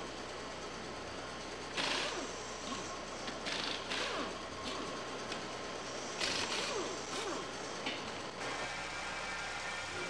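Workshop tool noise: metal tools clinking and a ratchet wrench clicking in short spells, about two, four and six seconds in, over a steady low hum.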